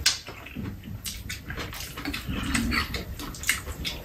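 Close-up eating sounds: irregular wet mouth smacks and sips as two people eat soup, with small clicks of metal spoons on bowls.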